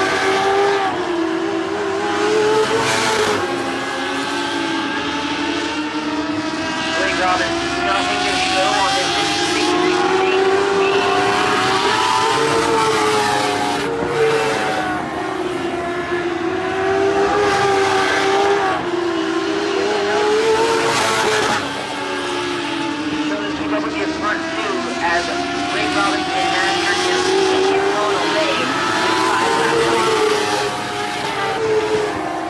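Dirt-track race car engines running hard as a pack laps the oval. The pitch rises on the straights and falls into the turns, repeating every few seconds, with more than one engine heard at once.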